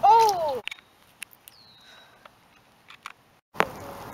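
A short, loud vocal cry falling in pitch, then about three seconds of near silence in which the background cuts out, broken by a sharp click after which the steady hiss of rain on the pond comes back.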